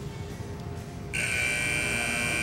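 Arena time buzzer sounding a loud, steady electronic tone that starts suddenly about a second in, signalling that the cutting run's time is up.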